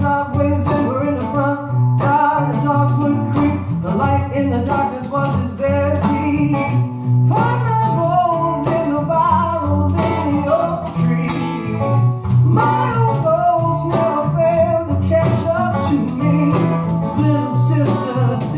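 A small band playing a song live: acoustic guitar, a six-string Bass VI carrying the low notes, and a man singing.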